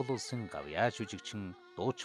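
Speech: an announcer's voice, with faint steady tones underneath.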